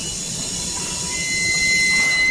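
Machinery of a wooden pallet nailing line running: a steady high hiss with thin, high, steady squealing tones, one of them coming in about halfway through, growing slowly louder.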